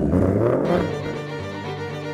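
The tail of a Maserati Ghibli's engine rev falls away in the first half second, under background music of sustained, string-like notes that carries on steadily.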